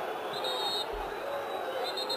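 Ambient sound of an open-air football ground under a pause in the commentary: a steady hiss of distant crowd and players' voices. There is a brief low thud about a second in.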